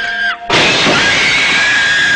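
A car window's glass smashes with a sudden loud crash about half a second in, and the breaking noise lasts nearly two seconds. Under it, a held high note carries on and music plays.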